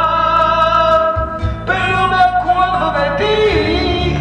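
A man singing a ballad into a microphone over a recorded backing track, with long held notes that slide from one pitch to the next.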